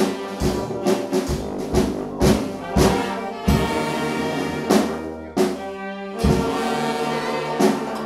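Brass band playing live: sousaphone, trombones, saxophones and trumpet over snare and bass drum hits about twice a second. The tune winds down and closes on a long held chord near the end.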